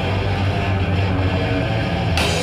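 Live hardcore punk band's distorted electric guitars and bass holding a loud, steady chord with no drum hits.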